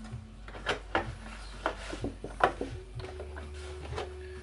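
Water draining down through the stacked plastic trays of a seed sprouter, falling as a series of irregular plinking drips into the water below.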